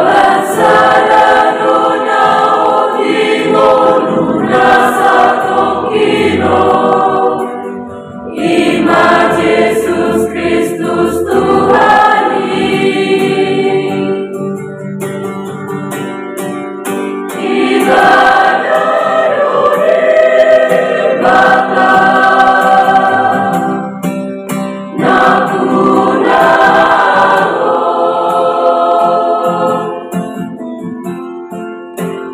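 Youth choir of young men's and women's voices singing a hymn together in sung phrases, with a short pause about eight seconds in and a softer passage midway before the full sound returns.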